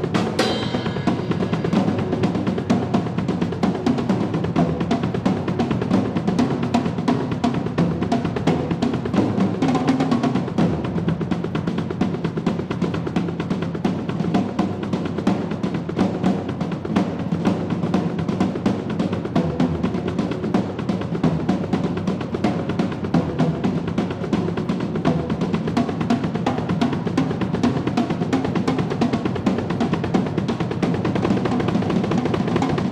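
Drum solo on a Yamaha acoustic drum kit: fast, dense strokes on snare and toms over the bass drum, with a ringing cymbal crash right at the start.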